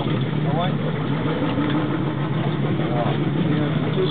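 Boat motor idling steadily, a low even hum, with short snatches of voice over it.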